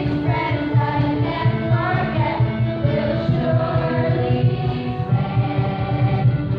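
A choir of many voices singing together with musical accompaniment, holding long notes over a steady low beat.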